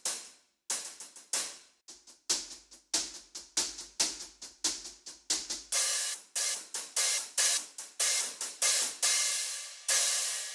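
Sampled hi-hat from a drum virtual instrument played as a run of hits at about three a second. The first half is short, tight closed and pedal hits; from about six seconds in come open hi-hat hits that ring on between strokes.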